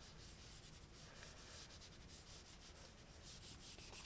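Very faint rubbing of an Apple Pencil's plastic tip stroking across an iPad's glass screen while shading, barely above silence.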